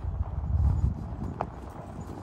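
Surly Ice Cream Truck fat bike riding over a rough dirt trail: low rumbling thumps from the tyres and frame, loudest in the first second, with a sharp click a little past halfway.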